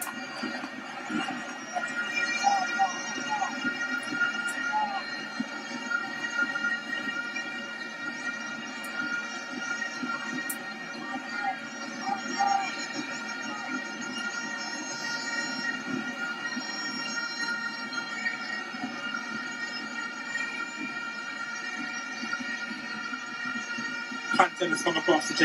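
Football stadium crowd noise: a steady din of many sustained horn-like tones over the murmur of the crowd, with a few brief calls or chants.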